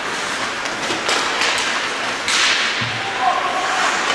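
Ice hockey skates scraping across the ice and sticks clacking on the puck. There are a few sharp clacks about a second in and a longer skate scrape a little after two seconds.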